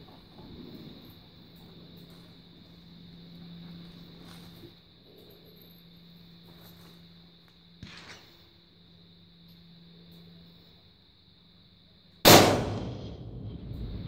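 A single 6.5 Creedmoor rifle shot, loud and sudden, about twelve seconds in, its report echoing and dying away over a second or so. Before it, only a faint steady hum.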